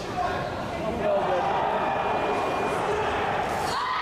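Indistinct voices of several people talking in a large hall, none of them clear.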